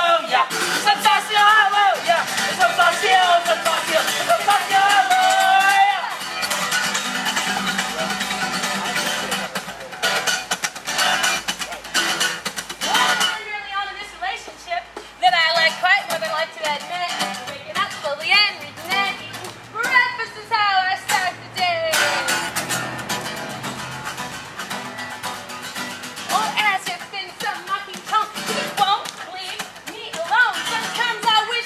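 Acoustic guitar strummed in a fast, changing rhythm while voices sing a song, performed live.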